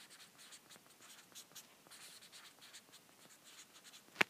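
Faint scratching and tapping of handwriting on an iPad's glass touchscreen, a quick series of short strokes.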